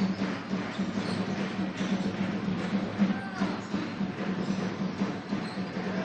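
Basketball gym ambience during live play: a general murmur of crowd and court noise over a steady low hum.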